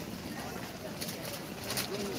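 Outdoor crowd background of distant voices chattering, with a few short sharp clicks about a second in and near the end.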